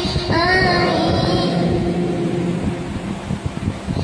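A young boy's melodic Quran recitation into a microphone as prayer leader: a new chanted phrase begins just after the start, its long drawn-out notes growing fainter toward the end.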